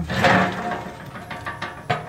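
Steel ash pan drawer of a wood-fired boiler's firebox scraping as it is pulled by its handle, then a few light metallic clicks and knocks of sheet-steel parts.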